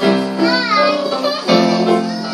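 Casio electronic keyboards played together in a duet, holding sustained chords with new chords struck at the start and again about a second and a half in.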